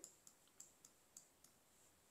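Near silence: room tone with about five faint, scattered clicks from drawing on the computer screen with the pen tool.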